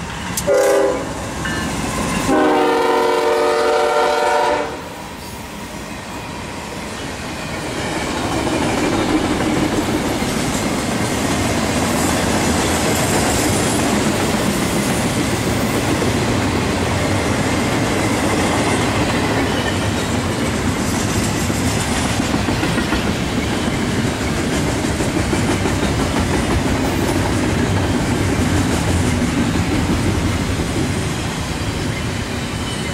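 Norfolk Southern GE ES40DC locomotive's air horn giving a short toot and then a long blast of about two and a half seconds as the lead locomotives pass close by. Then the double-stack intermodal cars roll past in a steady rumble with wheel clatter, growing louder a few seconds later and holding.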